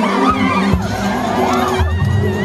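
Large crowd shouting and calling out excitedly, many voices overlapping, with music playing underneath.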